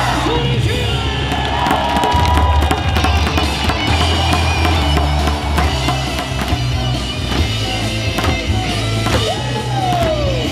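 Loud rock-style baseball cheer song played over the stadium speakers, with the cheer leader singing and shouting into a microphone and the crowd yelling and singing along over a steady beat.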